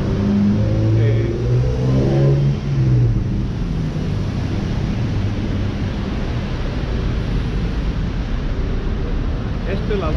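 Steady city-street traffic noise from cars driving past, with voices over it for the first few seconds.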